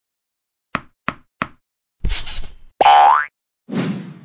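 Cartoon sound effects for an animated logo: three quick light taps, then a noisy burst, then a loud rising springy boing, and a thud near the end.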